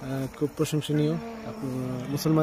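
A man's voice speaking in short phrases, with a steady buzz behind it.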